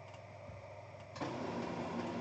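A few faint clicks, then a little over a second in an HP printer starts up and runs with a steady mechanical hum.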